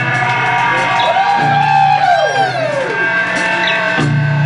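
Live rock band playing, with guitar to the fore and sustained notes sliding up and down in pitch about a second in.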